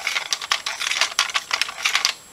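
LEGO bricks of a home-built 1x2x3 twisty puzzle clicking and rattling as one layer is spun round by hand: a quick, uneven run of many small plastic clicks.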